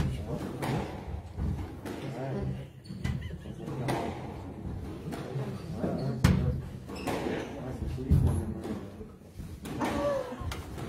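Squash rally: the ball being struck by rackets and smacking off the court walls, a sharp impact every second or two, the loudest about six seconds in.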